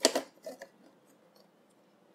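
Light clicks and knocks of a circuit board being set down and seated on a TV's sheet-metal back chassis: one sharp click at the start, then a couple of fainter ones about half a second in.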